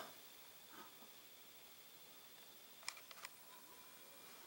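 Near silence: room tone, with a few faint clicks about three seconds in.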